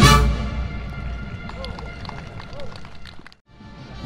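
Military brass band playing: a loud full-band hit with drums at the start, then sustained brass chords that fade. The music cuts off abruptly shortly before the end.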